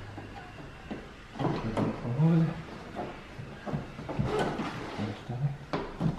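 Trunk cover panel being handled and fitted into a car's hatch, with short knocks and scraping clicks as it is pushed into place, amid low muttered speech.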